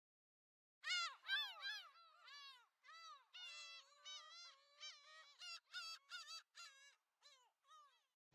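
A bird calling in a rapid series of short pitched notes, each rising and falling in pitch. The calls start about a second in and grow sparser near the end.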